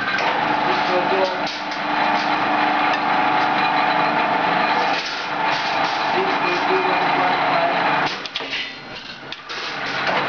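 Power-press cut-to-length machinery running with a steady, loud hum and hiss; it drops away about eight seconds in and picks up again near the end.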